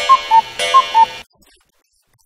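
An electronic alarm-like beep: a buzzy tone with a high note then a lower note on top, played twice in quick succession and cut off sharply after little more than a second.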